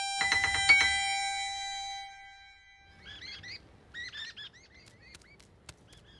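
A short chime jingle of several struck, bell-like notes that ring out and fade away over about two seconds. Then small birds chirp faintly from about three seconds in.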